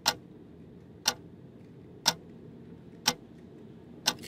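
Wall clock ticking loudly, four sharp ticks about one second apart, over a low steady hum.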